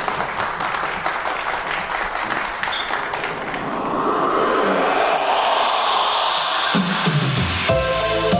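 Audience clapping, fading under a rising swell from the backing track. Near the end the song's intro starts with sustained keyboard notes and a beat.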